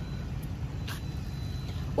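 Low steady rumble with two short clicks, the clearer one about a second in, as the hinged driver's seat of an electric tricycle is lifted open over the battery compartment.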